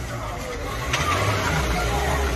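Low, steady engine rumble from a hatchback car as it drives up onto the bonnet of a parked car, with a short knock about a second in. Faint voices in the background.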